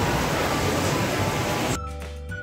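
Water falling and splashing in a tiered fountain, a steady rush that cuts off abruptly near the end as music begins.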